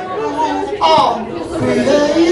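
Voices talking and chattering in a large, busy room.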